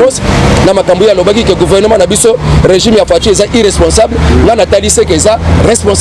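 A man talking continuously, over the low rumble of a motor vehicle, which grows stronger in the second half.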